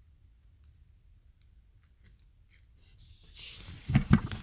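A few faint handling ticks, then about three seconds in a rising, second-long hiss of protective plastic film being peeled off an HJC FG-17 motorcycle helmet's face shield.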